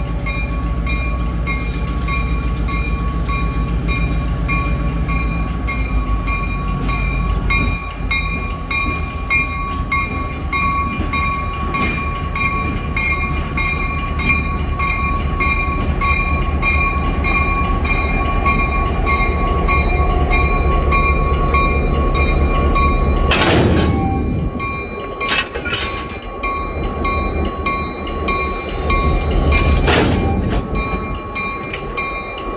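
Diesel switcher locomotive running as it moves up to couple onto a freight car, its engine giving a steady low rumble under an evenly repeating ringing, like a locomotive bell. Near the end there are two brief, loud bursts of noise.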